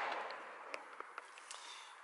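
Tailgate of a BMW i3s being opened by hand: a sharp click of the latch at the start, then a soft rushing noise that fades over about a second as the hatch lifts, with a few faint ticks after.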